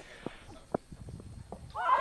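A single sharp knock as the delivered cricket ball reaches the batter, among a few faint ticks of open-field ambience. Near the end, fielders break into high-pitched shouts of appeal.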